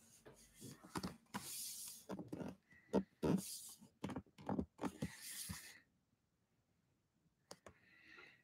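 Handling noise from a hand-held phone being moved about at a window: scattered soft clicks and rustles, with three soft hissing swells about two seconds apart, stopping about six seconds in.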